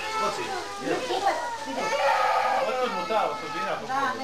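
Several children talking over one another, a busy babble of young voices.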